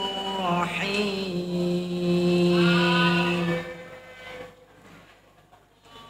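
A young male voice chanting Quran recitation (tilawah) in long melodic held notes, the pitch sliding about a second in and then held steady. The note fades out with echo about three and a half seconds in, leaving a quiet pause with faint hum.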